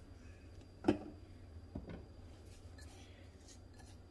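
A quiet kitchen with a few faint clicks and scrapes of small handling, one click a little under two seconds in; a single short spoken word about a second in.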